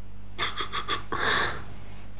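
A person's breath: about five quick huffs, then a longer breath out, over a steady low electrical hum.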